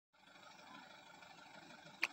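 Faint, steady outdoor background noise that cuts in just after a moment of dead silence, with no distinct event.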